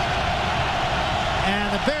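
Loud, steady noise of a large stadium crowd on its feet, yelling and cheering together as a home crowd making noise against the visiting offense.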